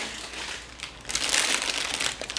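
Clear plastic packaging crinkling as a long bagged pack of shell-shaped Easter eggs is picked up and handled, louder and denser from about a second in.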